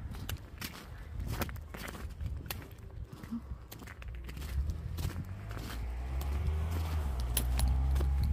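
Footsteps on a snowy sidewalk, heard as irregular short crunches, with clothing rustle. A low rumble builds up and gets louder over the last few seconds.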